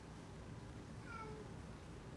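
A cat meowing once, briefly, about a second in, its pitch sliding slightly down.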